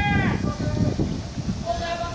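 Drawn-out, high-pitched shouted calls of baseball players' chatter, one call ending just after the start and another beginning near the end, over a steady low rumble.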